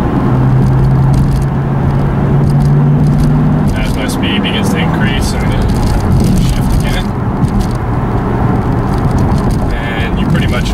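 A 2007 Ford Mustang GT's 4.6-litre V8 heard from inside the cabin. It holds a steady drone for the first three and a half seconds or so, then falls away as the car slows and the driver downshifts the five-speed manual.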